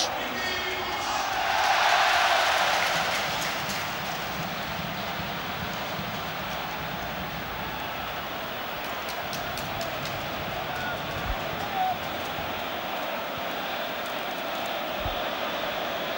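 Crowd noise from a packed football stadium, a steady din from the stands that swells about two seconds in and then holds level.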